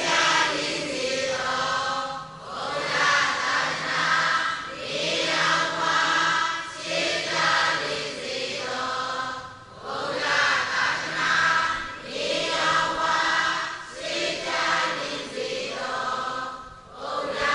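Buddhist chanting: voices recite in a steady melodic chant, in repeated phrases of about two seconds each with short breaks between them.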